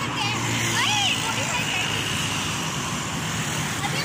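Steady road traffic on a busy street, cars and motorbikes passing close by, with a brief voice in the first second.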